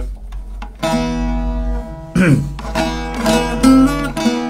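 Bağlama (Turkish long-necked saz) played with a plectrum, a few held notes picked out on its own, unaccompanied.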